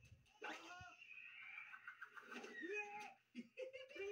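Faint cartoon character laughter and voices from a TV soundtrack, heard through the TV's speaker and picked up in a small room.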